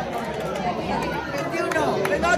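Several people chattering and talking over one another in a group, with no single clear voice.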